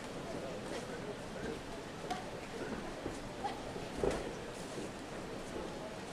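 Faint arena ambience around a boxing ring: a low murmur of crowd voices with scattered soft thuds of punches and footwork on the canvas, the strongest about four seconds in.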